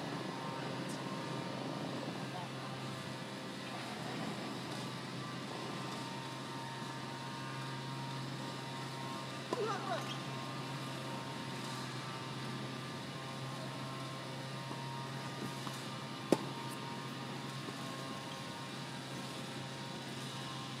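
A tennis ball struck once with a sharp crack about sixteen seconds in, with a few much fainter knocks of play elsewhere, over a steady low hum.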